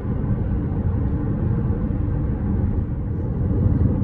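Steady low road and tyre rumble with a faint engine hum, heard inside the cabin of a Jeep Compass 2.0 Flex cruising at about 80 km/h.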